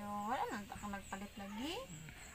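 A quiet voice making several short wordless sounds that slide up and down in pitch.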